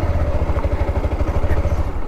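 Motorcycle engine running at low speed with a steady, rapid low pulse as the bike rolls slowly across a dirt yard.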